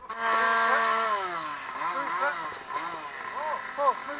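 Excited terriers whining and yelping: one long high whine that slides down in pitch, then a run of short rising-and-falling yelps.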